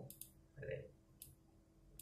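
Computer mouse clicking softly: two quick clicks just after the start and another about a second in.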